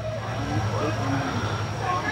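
Low steady rumble with faint distant voices.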